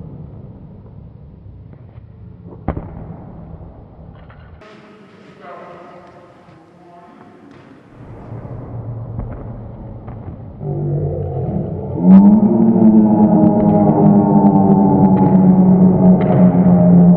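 Men letting out a loud, long, sustained shout together, building from about ten seconds in and held strongly from about twelve seconds in. Before that there is a quiet stretch with one sharp knock.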